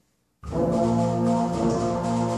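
A middle school symphonic band comes in all together about half a second in with a loud, brass-heavy sustained chord, then plays on in held chords.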